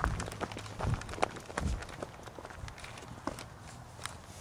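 Footsteps and bumps from a handheld camera being carried in the dark: a few heavy thumps in the first two seconds, then lighter, scattered clicks.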